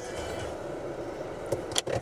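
Steady low hum of a car's cabin, with a couple of sharp clicks about a second and a half in.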